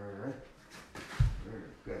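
A dog whimpering briefly, and a dull thump a little past halfway as two people grapple close together.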